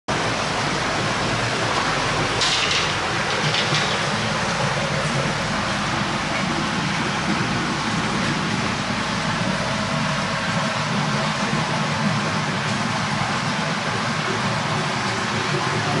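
Steady rushing background noise with a low hum, and two brief hisses about two and a half and three and a half seconds in.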